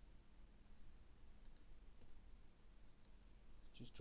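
Near silence with a few faint, scattered computer mouse clicks over a low steady hum.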